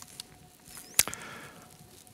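Small handling noises at a lectern: a single sharp click about halfway through, with a few faint ticks and a brief high squeak just before it, over a faint steady room hum.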